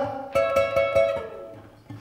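Acoustic guitar played alone: a chord is plucked about a third of a second in, followed by a few more notes, then left to ring and die away. A soft single note comes near the end.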